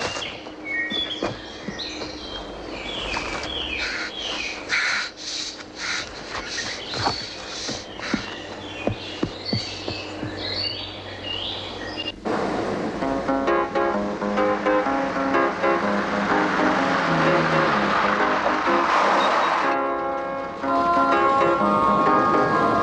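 Birds chirping in short, quick calls over forest ambience, with scattered sharp clicks. About twelve seconds in, a film music score enters with steady stepped notes and carries on, growing louder near the end.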